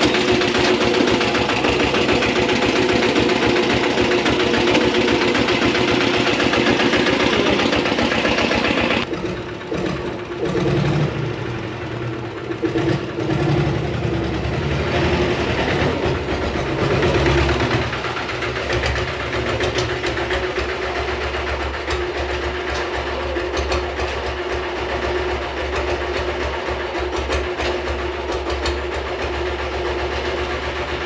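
Royal Enfield diesel Bullet's single-cylinder diesel engine running loud and even for about nine seconds, then after an abrupt change idling more quietly with a steady, knocking diesel beat.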